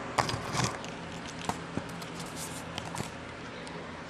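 Plastic packaging crinkling as a potted plant is handled and unwrapped: a few crackles in the first second, then scattered light clicks, over a steady low hum.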